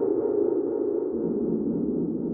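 Minimoog Model D app playing its "Useless Territory" effects preset on a held key: a steady, grainy synthesizer drone, low and full, fading slightly.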